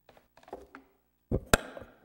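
Handling noise from a gooseneck lectern microphone being grabbed and bent into position: soft rubbing and bumps, then two sharp knocks about a quarter second apart, about a second and a half in.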